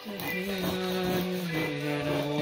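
A man's voice singing a slow tune in long held notes, stepping down in pitch about halfway through.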